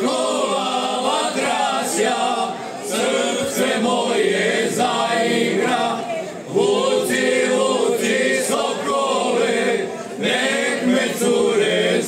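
A men's folk singing group singing together without instruments, in long sung phrases with short breaks between them.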